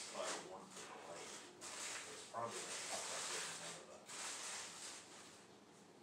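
Faint hushed, mostly whispered voices in short breathy phrases with pauses between, growing quieter toward the end.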